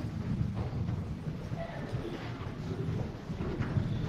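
Low, uneven rumble of footsteps and movement across the floor, with faint scattered knocks.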